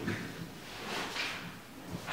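A pause with no speech: faint room tone with a few soft, brief rustles or shuffles.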